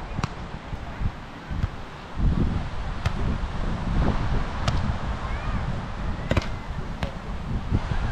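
A volleyball being struck by hand during a rally: about five sharp slaps a second or more apart, over a heavy low rumble of wind on the microphone.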